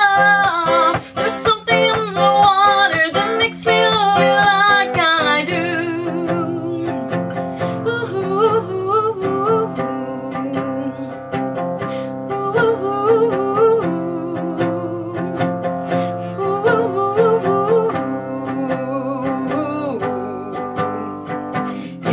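A woman sings a long wordless 'ah' over a nylon-string classical guitar for about the first five seconds. After that the guitar mostly carries on alone between sung lines.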